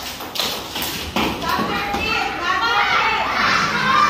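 Young children's and adults' voices calling out together in a classroom, with several sharp hand claps in the first second.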